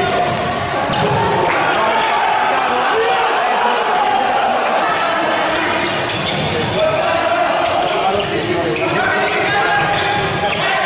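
Indoor futsal game in play: the ball is kicked and bounces on the wooden court amid the players' and spectators' unintelligible shouts and chatter, all echoing in a large sports hall.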